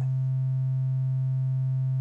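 Tiptop Audio ATX1 analog voltage-controlled oscillator holding one steady low note, a smooth, nearly pure tone with only faint overtones and no change in pitch or level.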